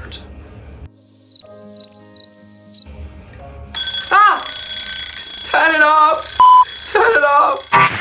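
Vintage travel alarm clock sounding a string of about six short, high-pitched rings in under two seconds. Then, from about four seconds in, loud music with sliding, voice-like notes.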